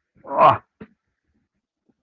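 A man clearing his throat: one loud, harsh burst, then a brief, smaller second one just after.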